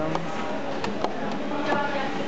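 Indistinct background voices mixed with what sounds like music, with a few light knocks.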